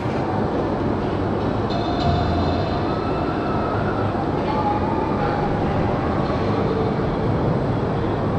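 Steel spinning roller coaster car rolling slowly along its track, a steady low rumble of wheels on rail.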